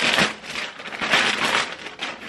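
Packaging from a delivery being crumpled and rustled by hand, in two surges of crinkling.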